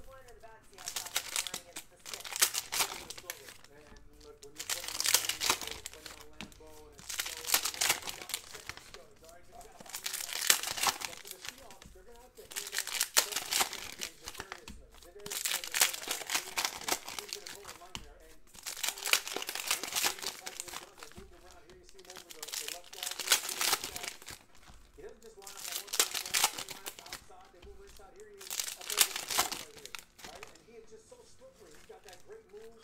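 Foil wrappers of Panini Prizm retail card packs being torn open and crinkled by hand, one pack after another: about a dozen crinkling bursts, one every two to three seconds.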